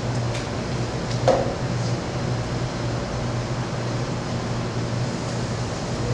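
Steady low hum with faint chalk taps on a chalkboard as someone writes, and one sharper knock about a second in.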